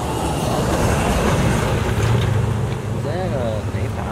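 A motor vehicle's engine running with a low, steady hum that swells in the middle. A brief voice is heard near the end.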